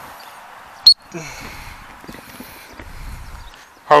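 A single short, sharp, high-pitched pip of a gundog training whistle about a second in, the loudest sound here. It is followed by a brief low falling sound and the faint outdoor background of the field.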